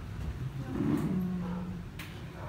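A low, held 'mmm'-like voice sound about a second long in the middle, dipping slightly in pitch and then holding steady.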